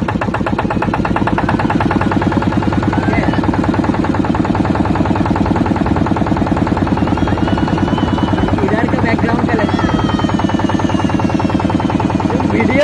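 Boat engine running steadily under way, a rapid, even pulsing beat.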